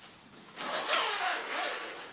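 Zipper on a Babolat tennis racket cover being pulled open in one continuous stroke. It starts about half a second in and lasts a second and a half, as a rasping hiss.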